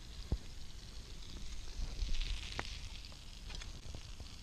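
Wood campfire crackling, with a few sharp pops and a brief soft hiss around two seconds in, over a low rumble.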